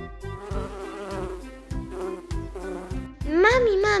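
Cartoon bee buzzing sound effect, a wavering drone, over a children's song backing with a regular beat. Near the end a child's voice calls out.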